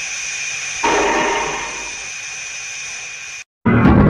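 Dubbed steam-like hissing sound effect with a steady high tone running through it. It surges louder about a second in, fades, then cuts off abruptly shortly before the end, when a louder, dense sound starts.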